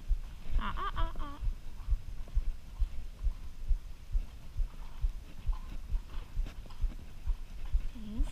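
A ridden horse's footfalls on arena sand, an even run of dull low thuds about three a second. A brief high voice sounds about half a second in.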